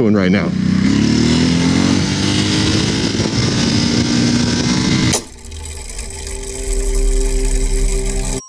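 Ducati motorcycle engine revving up under hard acceleration, its pitch rising steadily for about five seconds while the rider lifts into a wheelie. It then cuts off abruptly to a steadier, lower engine note.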